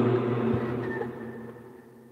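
A man's voice through a handheld microphone trailing off, its held sound fading away over about a second and a half, leaving a faint low hum.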